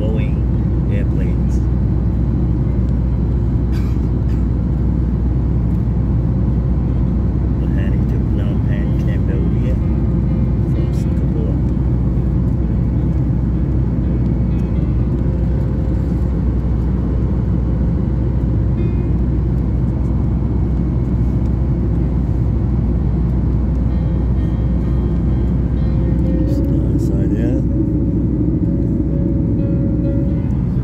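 Steady in-flight cabin noise of a Boeing 737 MAX 8, heard from a passenger seat: the deep, unbroken rumble of its CFM LEAP-1B engines and the airflow over the fuselage. Faint voices are mixed in, and a thin steady tone is added near the end.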